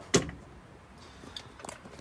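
A single sharp click, then a few faint light ticks, from a hand handling something inside a car's trunk.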